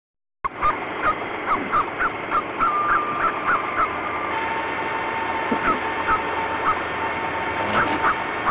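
A bird calling over a steady hiss: short calls repeated about three times a second, starting abruptly about half a second in.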